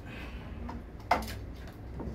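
A single sharp click about a second in, from plastic parts being handled and fitted as the new pump and its connector are set into the patient monitor's housing, over a low steady hum.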